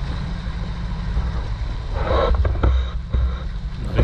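Fishing boat underway at trolling speed: a steady low engine drone with water rushing past the hull. A brief louder patch comes about two seconds in.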